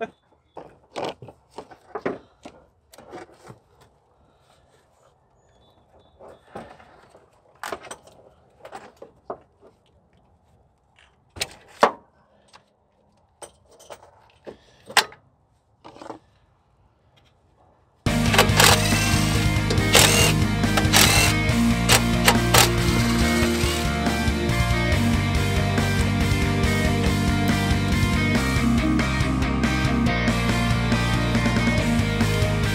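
Scattered clicks and light knocks of a fuel rail and injectors being handled in a Jeep 4.0 straight-six's engine bay. About two-thirds of the way in, loud music with a steady beat starts and runs on.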